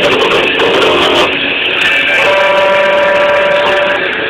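Distorted electric guitar playing a dense, noisy passage, then settling into one steady held note from about halfway in until just before the end.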